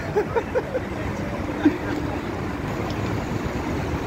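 Steady road traffic noise, an even low rumble of passing cars, with one brief sharp sound a little under two seconds in.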